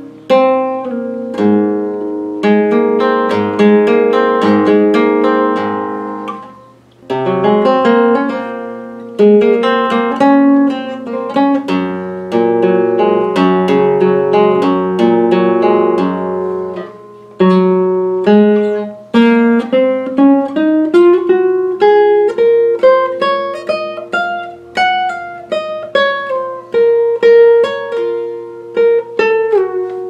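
Flamenco guitar, capo at the first fret, playing an unmetred free introduction in the mode of E (por mi): strummed chords and picked melodic phrases, with two brief breaths between phrases. In the second half a run of single notes climbs and then comes back down.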